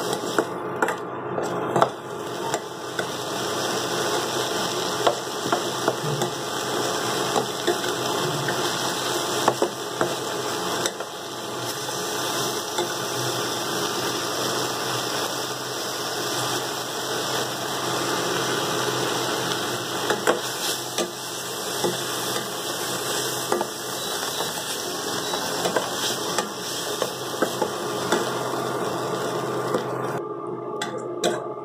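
Prawn masala gravy sizzling steadily in a stainless steel kadai, with a perforated metal skimmer scraping and clicking against the pan as it is stirred.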